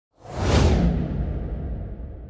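Whoosh sound effect: a rush of noise that swells quickly in the first half second, then dies away into a low tail that slowly fades.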